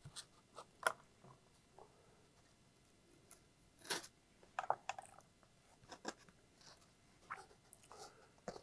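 Quiet, scattered clicks and light scrapes of hands working on a foam wing at a bench, with tools set down on a rubber mat. About four seconds in comes a short crunchy cut with a snap-off utility knife.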